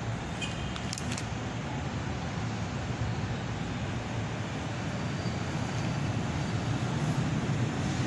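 Steady low rumble of distant road traffic heard from inside a large church, with a couple of faint clicks about half a second and a second in.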